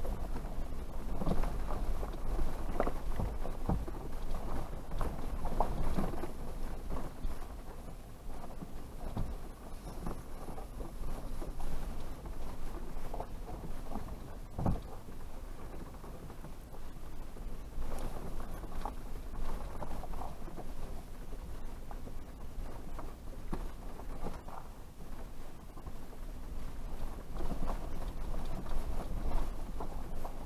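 Toyota 4Runner creeping down a rocky, washed-out dirt trail: a low steady engine note under tyres crunching over gravel and rock. Irregular knocks and rattles come as the truck goes over bumps.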